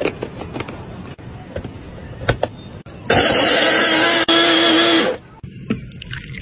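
Clicks and knocks as a countertop blender's jar and blade base are fitted together, then the blender motor running for about two seconds, blending orange segments, with a brief break partway and a sudden stop.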